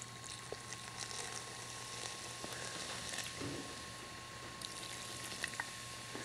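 Dr Pepper soda poured steadily from a plastic bottle into a plastic blender jar of food, a faint fizzing pour.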